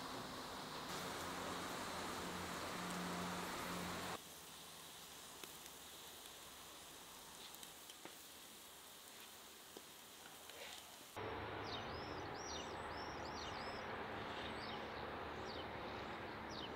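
Outdoor ambience in cut sections. First a steady hiss with a low hum, then a quieter stretch of faint sizzling with a few crackles from the steak on the grill. From about eleven seconds in, small birds chirp over and over in quick, falling chirps.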